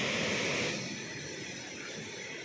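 Water rushing steadily out of a dam's one open sluice gate into the foamy pool below, a bit louder for the first part of a second.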